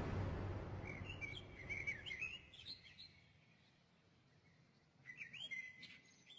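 Birds chirping: two spells of quick, high chirps, about a second in and again near the end, with a quiet gap between, as the tail of an earlier louder noise fades out.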